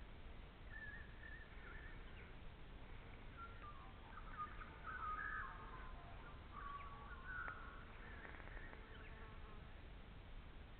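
Birds calling: short warbling, chirping phrases that come and go, busiest and loudest in the middle, over faint background hiss.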